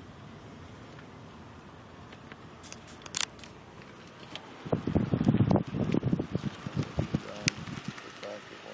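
Low, steady cabin and road noise from a car driving slowly, with a few light clicks. About halfway through comes a burst of loud, irregular knocks and rustling, the handling noise of the phone being moved and rubbed against the car's window pillar.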